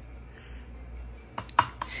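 Three or four short plastic clicks and taps about one and a half seconds in, from a plastic measuring scoop knocking against a plastic container as powdered cereal is tipped in.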